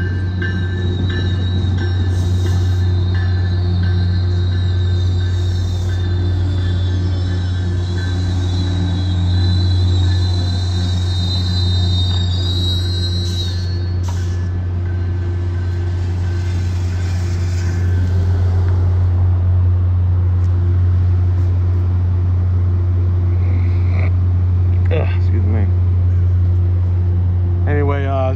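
MBTA commuter train with an F40PH-3C diesel locomotive, running steadily with a loud low drone. A high-pitched whine sits over it and stops about halfway through.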